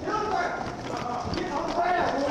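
Running footsteps on a hard floor, picked up by a police body-worn camera during a foot chase, with voices over them.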